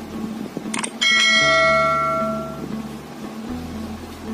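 A short click, then about a second in a bright bell chime sound effect rings out and fades over a second or two, over background music.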